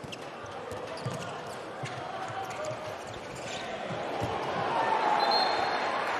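A handball bouncing repeatedly on an indoor sports-hall floor while players build an attack, with the arena crowd noise growing louder near the end.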